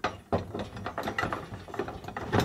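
HDPE tractor canopy and its steel mounting brackets knocking and rattling against the rollover-bar mount as the canopy is lifted and set in place: a quick, irregular string of clicks and knocks.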